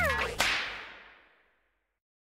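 Logo sound effect: a short falling pitched glide, then a sharp whip-like crack about half a second in whose ringing tail fades away over about a second, followed by silence.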